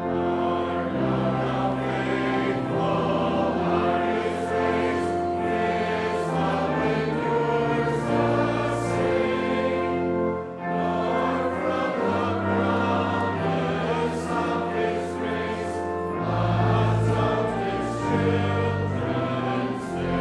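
A congregation singing a hymn together, with instrumental accompaniment holding long low notes beneath the voices. There is a short breath between lines about ten and a half seconds in.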